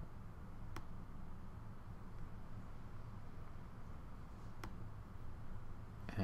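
Two single computer-mouse clicks, about four seconds apart, over a faint steady low hum of room tone.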